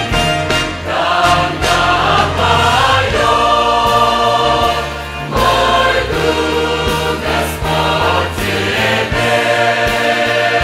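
Large mixed choir of men's and women's voices singing a Russian-language hymn, held notes in harmony; the sound dips briefly about five seconds in at a phrase break, then swells again.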